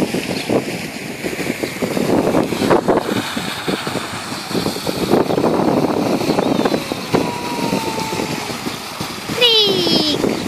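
Small plastic wheels of a toddler's balance bike rolling over stone paving slabs, a continuous rough rattle with irregular jolts. Near the end, a short high-pitched sound falls in pitch.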